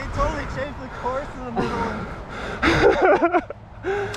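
Indistinct conversation between people, with a louder voice about three seconds in.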